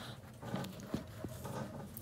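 Faint, irregular taps and rubbing: handling noise from a phone held close while a knit sneaker is moved in front of it.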